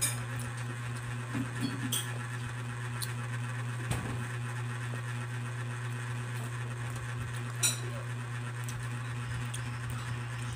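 Metal forks clinking now and then against a dinner plate during a noodle meal, over a steady low background hum; the sharpest clink comes about three-quarters of the way in.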